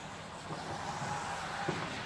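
Ford F-250 diesel pickup fitted with a snowplow, running as it drives slowly toward the microphone. It grows louder after about half a second, with a short knock then and another near the end.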